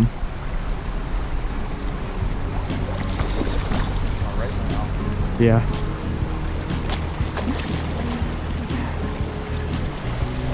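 Steady rushing noise of wind buffeting the microphone over a flowing stream, with a deep rumble underneath.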